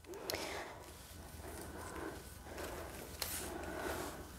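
Faint rustling and handling of thin ribbon being drawn off and held ready for cutting, with a couple of soft clicks.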